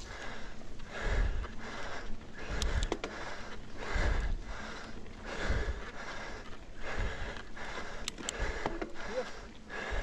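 Cross-country mountain bike rolling fast over a dirt singletrack, with tyre and trail rumble, a few sharp rattles from the bike, and the racing rider breathing hard, a breath swelling about every second and a half.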